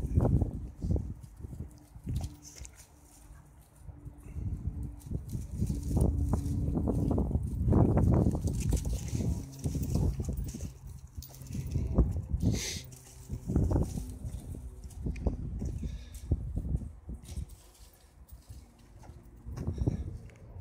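Two dogs play-fighting: growling and scuffling in bursts, with short lulls between bouts.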